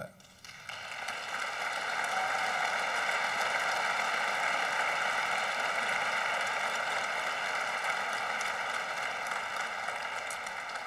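Audience applauding, swelling up over the first second or two and then holding steady, easing off slightly near the end.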